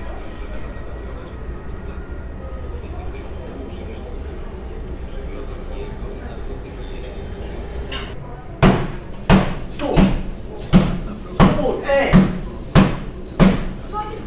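A meat mallet pounding pork cutlets flat in a small kitchen: after a stretch of low background, loud, evenly spaced blows begin about two-thirds of the way in, roughly one every 0.7 seconds, each ringing briefly.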